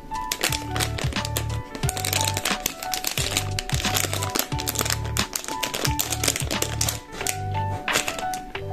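Background music with a steady beat, over thin plastic packaging crinkling and clicking as it is handled, densest in the middle.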